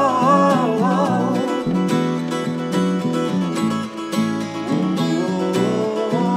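Acoustic guitars strumming chords with two or three voices singing in harmony. The singing drops out about a second and a half in, leaving the guitars alone, and the voices come back near the end.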